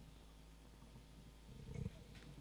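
Microphone handling noise over a steady low hum from the PA or recording chain: faint rumbling as the microphone on its stand is adjusted, with a louder low bump near the end.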